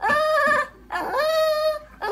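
An elderly Shih Tzu 'talking': two drawn-out, pitched vocal calls. The second rises in pitch and then holds.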